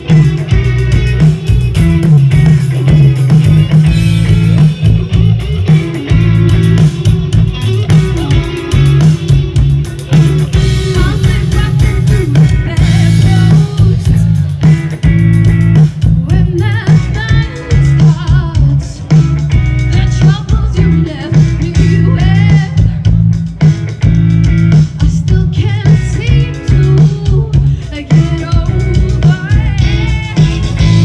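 Live band playing loud amplified music: a woman singing over guitar, bass and drums, with the bass heavy.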